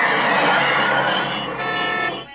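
Cartoon car sound effect played through a television speaker: a loud, steady, noisy rush with faint high tones running through it, lasting about two seconds.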